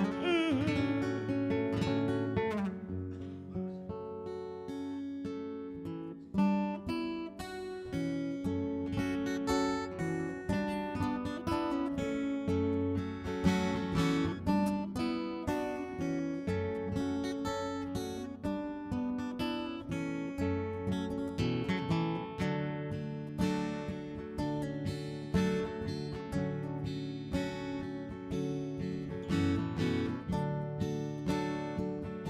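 Two acoustic guitars, one steel-string and one nylon-string, playing an instrumental passage of picked and strummed chords. After a short dip about six seconds in, a steady strummed rhythm starts up.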